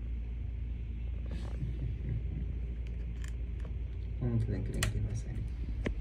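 A brief murmured voice a little after four seconds in, over a low steady hum, with a few light clicks scattered through.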